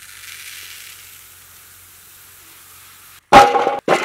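Dry split lentils (toor dal) pouring in a steady hiss into a clay pot, which stops suddenly after about three seconds. Near the end comes a sudden loud clatter with a short metallic ring.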